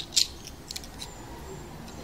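Small plastic toys handled on a tabletop: a click and a short scrape right at the start, then a few faint light ticks.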